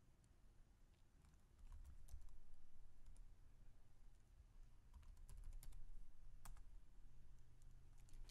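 Faint computer keyboard typing: scattered, irregular keystrokes, with a quick run of keys a little past the middle.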